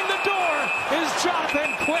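A referee's whistle blown twice, a steady high tone: the first blast nearly a second long, the second starting about a second and a half in, stopping play after the goalie covers the puck. Arena crowd noise and voices run under it.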